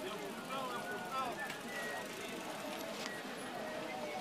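Crowd of mountain bikers at a start line talking, many voices overlapping in a steady chatter.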